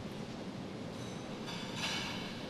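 Steady low background noise of a large hall, with a brief brighter sound near the end.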